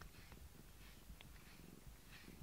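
Domestic cat purring faintly at close range: a low, steady rumble.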